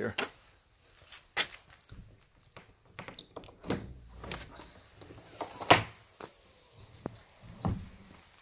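Side door of an enclosed car trailer being unlatched by its recessed ring handle and swung open: a series of separate clicks and knocks, the loudest about two-thirds of the way through.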